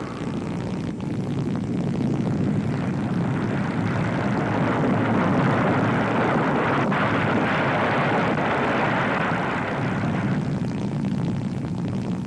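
A steady droning rumble, an engine-like sound effect, that builds up over the first couple of seconds and eases off near the end.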